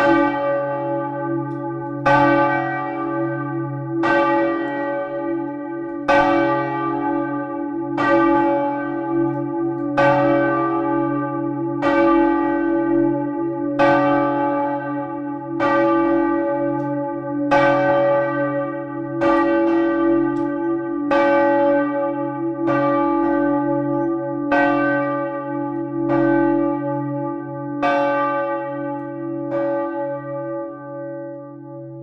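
Large bronze church bells in a stone bell tower, swung by hand with ropes. A heavy strike comes about every two seconds, and each one keeps ringing with a deep hum into the next. The strikes stop shortly before the end and the ring dies away.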